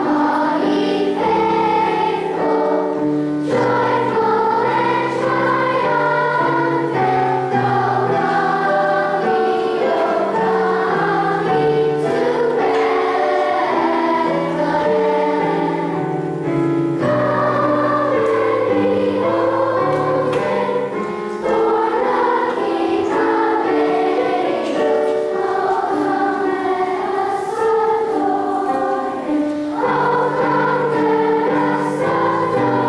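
A large choir of grade-school children singing together, with notes held a second or two each over a sustained accompaniment.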